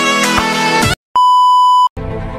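Upbeat intro music with plucked strings that stops abruptly about halfway through, then after a brief gap a single steady electronic beep, louder than the music, that lasts under a second and cuts off suddenly.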